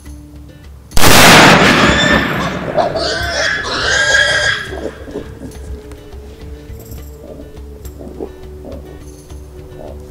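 A single loud rifle shot about a second in as the wild boar is hit, followed by a few seconds of the boar squealing as it runs off. Background music runs underneath.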